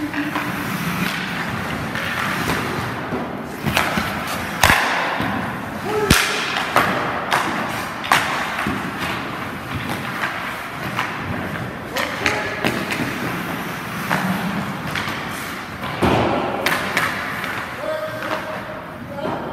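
Ice hockey drill sounds in an indoor rink: skate blades scraping and carving the ice, under sharp knocks of sticks and pucks every second or two, echoing in the arena.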